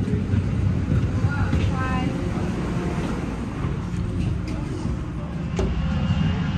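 Steady low rumble of airliner cabin noise, with faint voices of other passengers about one to two seconds in.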